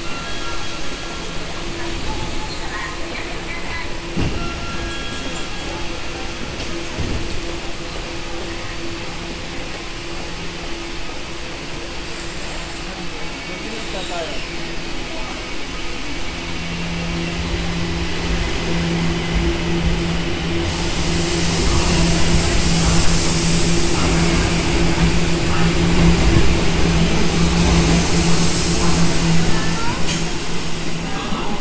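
A Tokyo Metro Ginza Line 1000-series train pulling out of an underground platform. Its running noise builds from about halfway through, with a steady low hum, and is loudest over the last third as the cars pass by.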